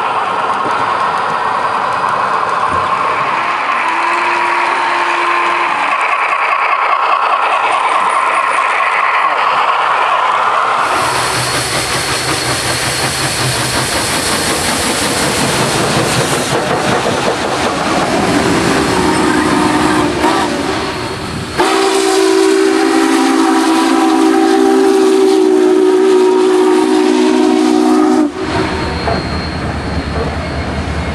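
Dubbed steam locomotive sound: the running noise of a passing steam train, then a multi-note steam whistle sounding twice in the second half, the second blast long and steady. The sound changes abruptly at several points, like spliced recordings.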